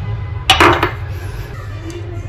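A ceramic mug and a glass mug set down on a hard table: a short clatter and clink about half a second in, over a steady low hum.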